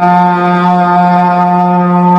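A Buddhist monk chanting in Sinhala into a microphone, holding one long, steady note.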